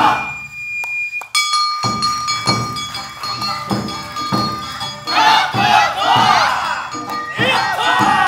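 Live Awa Odori hayashi music: after a brief break in the first second with a single held high note, the ensemble comes back in with a bamboo flute line over steady taiko drum beats. From about five seconds in, a group of dancers shouts chanted calls over the music.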